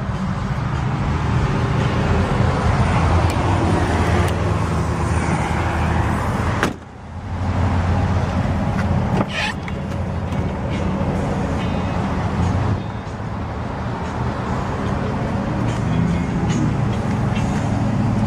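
2004 Cadillac Escalade's 6.0-litre Vortec V8 idling steadily, with a knock and a brief drop in level about seven seconds in.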